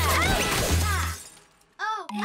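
Cartoon sound effects: a sudden crash with swooping whistle-like glides over a bass hit, dying away after about a second. A short swooping tone follows near the end.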